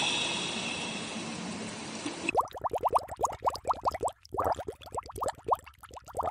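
A steady hiss fades out over the first two seconds. Then comes a cartoon underwater bubbling sound effect: quick runs of rising bubble bloops, about ten a second, in three runs with short gaps.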